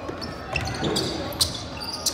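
A basketball being dribbled on a hardwood gym floor, a few sharp bounces with short high sneaker squeaks among them, in an echoing gym with faint voices.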